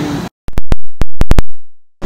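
The steady running noise cuts out abruptly, then about seven sharp, very loud clicks come in quick succession over about a second, with dead silence between and after them: digital glitches in the audio track at an edit.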